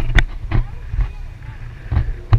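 Motorboat under way through chop: a steady low engine drone with several sharp thumps as the hull slaps the waves.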